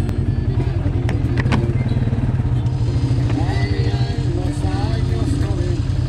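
Polaris ATV engine running steadily, with fast even pulsing in a loud low rumble. A couple of sharp clicks come about a second in.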